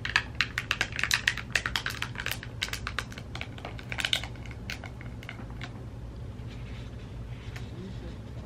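Fingertips and nails tapping and pressing a matte plastic screen protector onto a tablet's glass screen while the film is peeled and flexed: a rapid run of light clicks and crackles in the first three seconds, another cluster about four seconds in, then sparser clicks.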